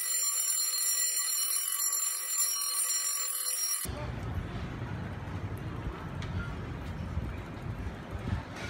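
A steady, high-pitched electronic ringing made of several tones together, which cuts off suddenly about four seconds in. It is followed by a low, even rumble of outdoor background noise.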